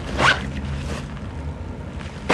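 A zip on a black leather bag pulled once in a short, quick stroke, rising in pitch, shortly after the start.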